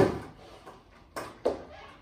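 Skateboard on a wooden floor: a loud thud right at the start as the rider lands on the board, then two lighter knocks a little over a second later as he steps off onto the floor.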